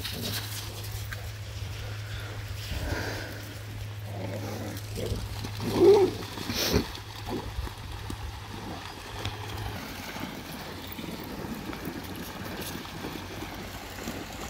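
Shoreline ambience with dogs splashing through shallow water, under a steady low hum that stops about ten seconds in. A short call about six seconds in is followed by a sharp click.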